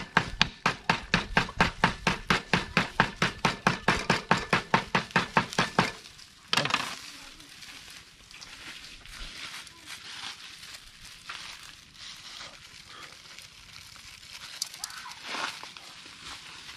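Black pepper being crushed by hand: quick, even pounding on a wooden table, about five strikes a second, stopping after about six seconds. After that comes quieter rustling of a small plastic bag of the crushed pepper.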